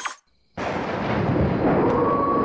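Thunder sound effect: after a brief silence, a long rolling rumble starts about half a second in and holds steady, with a faint high held tone joining near the end.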